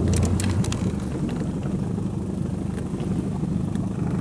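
Small boat's motor running steadily at low speed, a low even hum, with a few light clicks in the first second.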